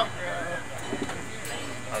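A lull of faint, indistinct voices over a steady low electrical hum from the stage's amplified sound system.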